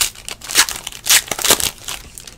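Plastic wrapper of a trading-card pack crinkling and tearing as hands pull it open, in several sharp rustles about half a second apart.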